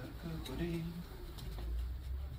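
A dove cooing: two short, low coos in the first second.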